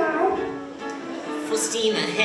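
Live pit band playing stage-musical accompaniment with sustained pitched notes; a voice glides down in pitch briefly at the start.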